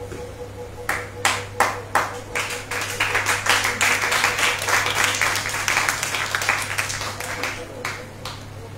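Church congregation clapping: a few separate claps about a second in, building into steady applause from about three seconds that dies away near the end.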